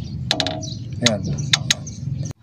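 A man's short spoken remarks over a steady low background rumble.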